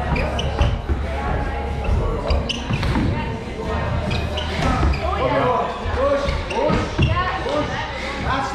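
Shoes thudding and knocking against hollow plywood parkour obstacles as a person jumps and climbs, over people chattering in the background.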